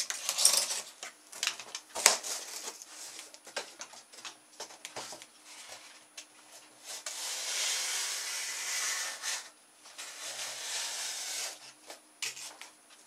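Sharp knife cutting through corrugated cardboard: scattered scratchy strokes and clicks, then one long continuous cut of about two and a half seconds starting about seven seconds in, and a shorter cut near the end.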